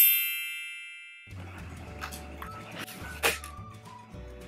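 A bright, bell-like ding that rings out and fades away over about a second, followed by faint low hum with a sharp click about three seconds in.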